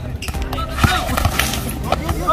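Live court sound of a basketball game: a basketball bouncing on the hard court with sharp thuds, loudest just before a second in and again near the end, under players' voices calling out. Background music fades out at the start.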